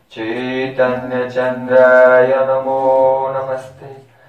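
A man chanting a Sanskrit devotional prayer in one long, steady, melodic phrase that begins just after the start and trails off near the end.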